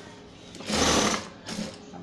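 Industrial sewing machine stitching through a thick knitted-strip rug: one short run about halfway through, then a briefer one just after.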